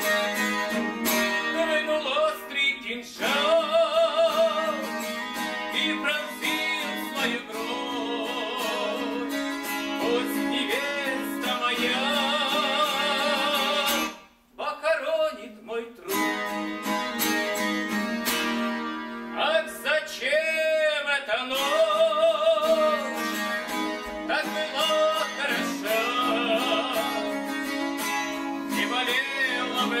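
Acoustic guitar strummed as accompaniment to a man singing, with wavering held notes. The music drops out briefly about halfway through, then resumes.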